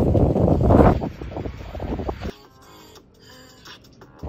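Wind buffeting the microphone for the first two seconds or so, then quieter background music.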